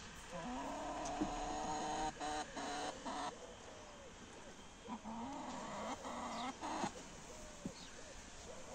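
Animal calls in two spells, a few drawn-out pitched calls each, the first from about half a second in, the second near the middle.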